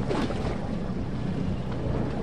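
Wind buffeting the microphone over a steady rush of water on open sea, with a low rumble and a brief gust right at the start.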